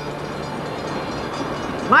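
A steady, even mechanical rumbling noise that holds at one level throughout.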